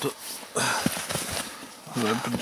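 Boots crunching in snow beside a wooden beehive, with a few light knocks as gloved hands take hold of the hive body.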